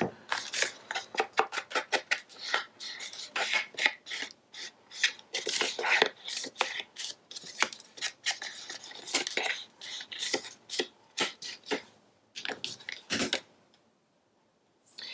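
A foam ink blending tool scuffed and tapped along the edges of a sheet of patterned paper, then paper rustling as the sheet is pressed down onto the page. The strokes are short and irregular and stop shortly before the end.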